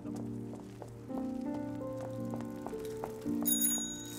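Orchestral film score with held notes, and a bicycle bell rings once, briefly, about three and a half seconds in.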